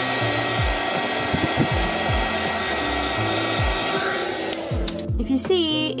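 Heat gun blowing steadily as it melts the top of a jar of set solid perfume, cutting off about four and a half seconds in. Background music with a bass beat plays throughout.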